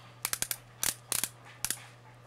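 L'Oreal Magic Lumi twist-up highlighter pen ratcheting as it is twisted to push the product up: about nine sharp clicks in short, irregular groups.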